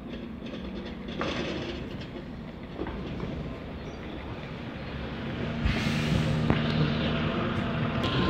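Single-decker diesel bus engine running at a stop, a steady low drone that grows louder in the second half, with a short sharp hiss of air about six seconds in.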